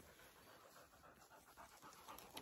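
Near silence, with a dog's faint panting close by.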